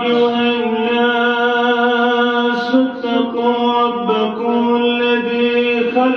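A man's voice chanting Arabic recitation in long, held melodic notes, with slow steps in pitch.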